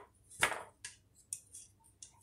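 Light wooden knock from the loom's sticks as the warp is handled and the shed is opened by hand, about half a second in, followed by a few fainter clicks.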